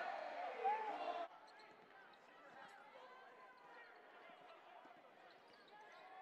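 Arena crowd noise after a made three-pointer, cutting off abruptly about a second in. It gives way to faint arena sound with distant voices and a basketball bouncing on the hardwood court.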